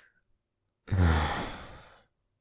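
A man's deep, breathy sigh, starting about a second in and trailing off: a reluctant, resigned sigh.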